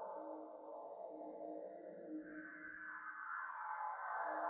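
Electroacoustic live-electronics music made in Csound and Max/MSP: a dense, ping-like texture over a low tone pulsing on and off, with a higher band of sound gliding steadily upward in pitch through the second half.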